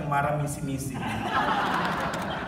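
A man speaking and chuckling into a microphone, then about a second in a brief burst of laughter.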